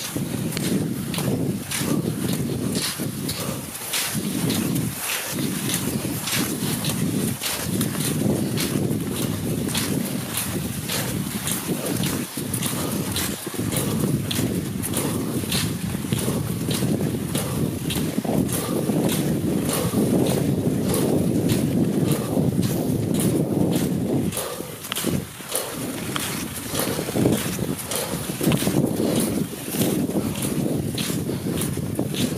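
Wind buffeting the microphone of a camera moving along with skate skiers, under a steady run of sharp scrapes and clicks, a few a second, from skis and poles on snow.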